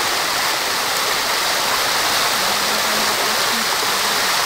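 Mountain stream cascading down over rocks in a small waterfall, a steady even rush of running water.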